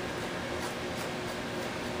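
Steady, even hiss of indoor room noise, like a fan or air conditioner running.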